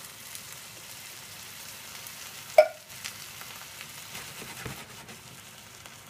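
Tomatoes with softened onion and garlic sizzling steadily in a frying pan on the hob, with a single sharp knock about two and a half seconds in.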